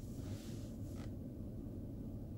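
Low steady rumble of a car cabin, with a faint soft click about a second in.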